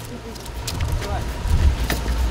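A vehicle engine running steadily at idle, a low rumble, with indistinct voices of people nearby and a few small knocks.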